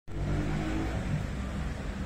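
Street traffic: a car engine running with a steady low rumble, its pitched hum clearest during about the first second.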